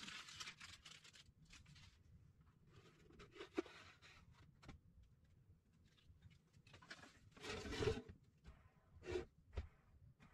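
Thin protective plastic foil being peeled off the metal tables of a small jointer, crinkling, then hand handling of the machine: a sharp click, a longer rustling scrape about halfway through, and two short knocks near the end.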